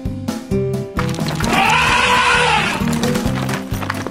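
Cartoon background music with a steady beat; about one and a half seconds in, a cartoon elephant's cry, rising and then falling in pitch, lasts just over a second.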